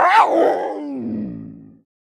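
Animated black panther's growl sound effect: a single growling call that rises briefly, then falls in pitch and fades out after about a second and a half.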